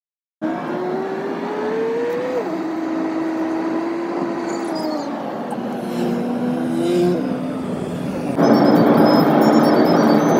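Car engine and road noise heard from inside the cabin: the engine tone climbs as the car accelerates, then drops back as it shifts gear, twice. About eight and a half seconds in, the sound steps up, louder and rougher.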